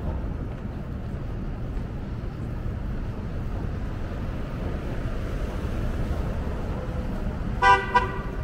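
Steady low rumble of city street traffic, with a vehicle horn giving a short double honk near the end.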